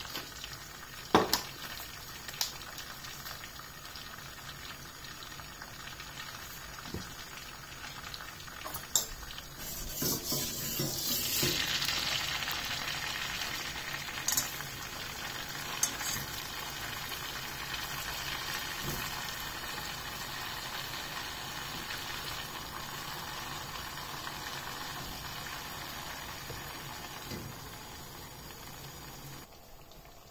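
Food cooking in a pan on the stove: a steady hiss, with a few knocks of utensils against the pan. About ten seconds in the hiss swells sharply, then settles and holds steady.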